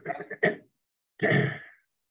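A person's short vocal sound, then about a second in a long breathy sigh that trails off.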